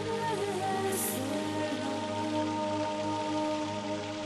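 Background music of long held notes over the steady splashing rush of spring water flowing across a metal intake screen grate.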